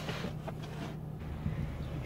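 Steady low hum of a car's engine, heard from inside the cabin.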